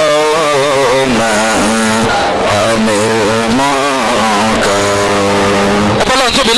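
A man's voice singing a chant in long, wavering melodic lines with heavy vibrato, over a steady low held note.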